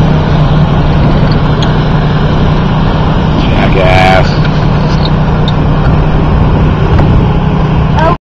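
A boat's engine droning steadily under way, mixed with rushing water and wind noise. A short voice call cuts in about four seconds in.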